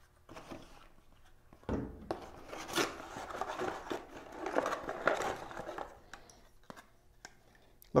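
Cardboard packaging being opened by hand: box flaps and plastic wrapping rustling and scraping, with a knock a little under two seconds in.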